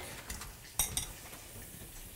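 A few light clinks of metal kitchen utensils, close together about a second in, as a whisk is picked out from among the utensils.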